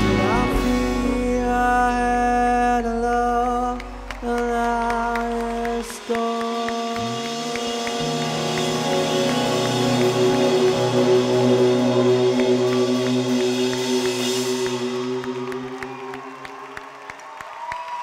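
Live band (bass, acoustic guitar, drums and keyboards) playing the closing bars of a gentle song, with long held notes and chords. A deep bass note drops out about six seconds in, and the sound slowly fades away near the end.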